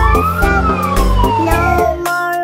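Ambulance siren sound effect: one wail that rises until about half a second in, then falls slowly until near the end, over children's song music.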